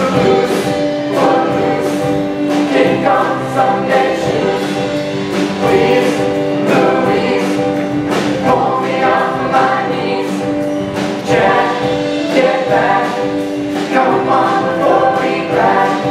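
A mixed ensemble of voices singing an upbeat song together over instrumental accompaniment with a steady, regular beat.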